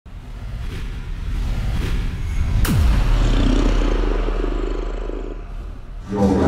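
Cinematic intro sound effect: a low rumble swells, then a hit about two and a half seconds in with a steeply falling pitch sweep, followed by a long low boom that fades away.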